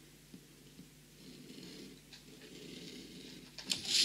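Craft knife drawn lightly along a metal ruler, scoring the protective paper of a diamond painting canvas: a faint scratching, with a couple of light clicks near the end.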